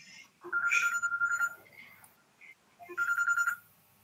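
A telephone ringtone: a warbling electronic tone rings twice, once for about a second starting half a second in, and again for about half a second near the three-second mark.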